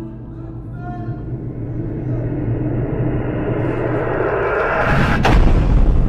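Suspense reveal sound effect: a noise swell that rises and grows louder for about five seconds, ending in a sharp slam with a deep boom, timed to an on-screen gavel strike announcing the verdict.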